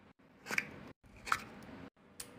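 A small paper gift box being opened and handled, with a sharp click or crinkle about half a second in and another about a second and a third in. Abrupt short silences separate the sounds.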